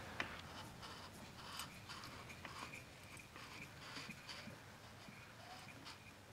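Faint, irregular scratchy rustling and light clicks as a 139QMB four-stroke scooter engine is turned over by hand, its cam chain and camshaft sprocket rotating half a turn to reach the other top dead center.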